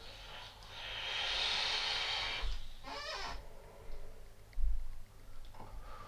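A long hissing draw, about a second and a half, as air is pulled through the Infinite CLT V3 sub-ohm rebuildable dripping atomizer on a high-wattage box mod, followed by a short rough breath about three seconds in and a low knock a little later.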